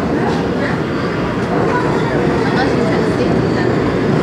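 R160A-2 subway train standing at the platform with its steady rumble and hum, joined by indistinct voices.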